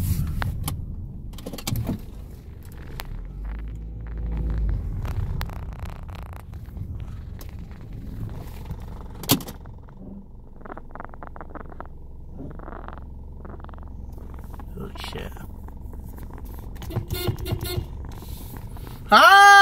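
Low, steady rumble inside a car cabin, engine and road noise, with scattered small clicks and one sharp click about nine seconds in.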